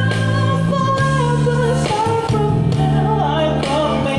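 Live band performing a love-song cover: a singer's held notes, gliding between pitches, over acoustic guitar and steady low bass notes.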